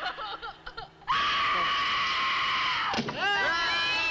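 A young woman's long, high scream on a movie soundtrack, held for about two seconds and cut off suddenly, then voices. It is the scream of terror of a sacrifice victim under a ritual knife.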